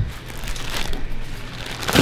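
Plastic-wrapped instant-noodle multipacks rustling as they are carried and put down on a shop counter, over a low steady hum, with one sharp knock near the end.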